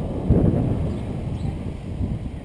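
Wind buffeting the microphone of a moving action camera: a low rumbling noise that swells and falls in gusts.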